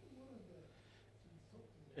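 Near silence: room tone with a steady low electrical hum, and a faint voice-like sound falling in pitch during the first second.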